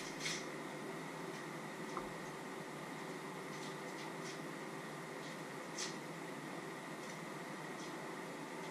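Steady low hum and hiss of a small kitchen, with a few soft clicks and scrapes from utensils and items being handled at the counter, the clearest one near the end.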